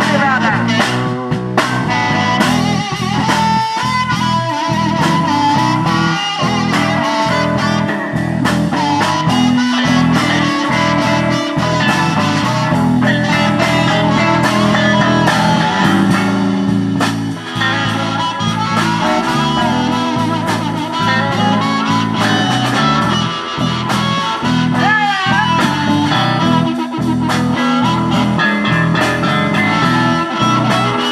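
Live electric blues band playing an instrumental break: a lead electric guitar with bent notes over electric bass and a steady drum beat, with harmonica in the mix.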